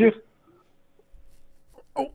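Men talking on a phone-in radio show. A sentence ends, there is a pause of about a second and a half with only a faint low rumble, and the talk starts again near the end.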